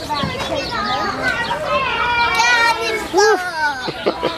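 Children playing and calling out, several young voices overlapping, with one louder call about three seconds in.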